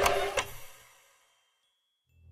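Music and sound effects ending: two sharp clicks in the first half-second, then a fade to silence within about a second.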